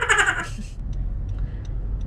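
A person laughing briefly at the start, then the steady low rumble of the car's engine and road noise heard inside the cabin.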